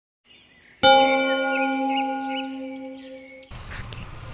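A single struck bell rings out about a second in and fades slowly, with birdsong chirping over it. Both cut off suddenly near the end, giving way to a steady background hiss.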